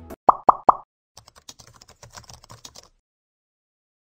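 Three quick pop sound effects, each rising in pitch, then about a second and a half of computer-keyboard typing clicks, then silence.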